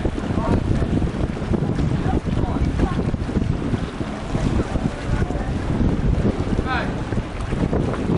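Wind buffeting the microphone, a constant uneven low rumble, with brief snatches of voices from people close by.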